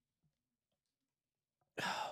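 Near silence, then a man starts talking near the end.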